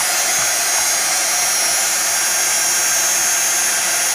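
Heat embossing tool (craft heat gun) running steadily: a loud, even rush of blown air with a steady high whine from the fan motor.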